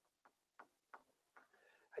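Faint, short ticks of a dry-erase marker stroking on a whiteboard as a word is written, about five strokes a third to half a second apart.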